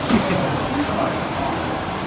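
Indistinct voices of people over a steady, dense background noise, with a couple of short snatches of voice standing out briefly.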